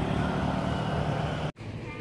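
Steady outdoor background noise with a low hum underneath. It breaks off abruptly about one and a half seconds in, then carries on fainter.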